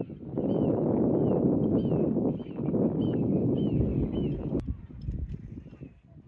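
Wind buffeting the microphone, a dense low rumble that eases off after a sharp click about four and a half seconds in and fades near the end. A bird gives short, high chirping calls about twice a second over it.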